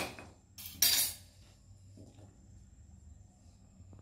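A knife cutting through a woody cassava stem: a sharp cut right at the start and a second one about a second in, followed by a few faint handling clicks.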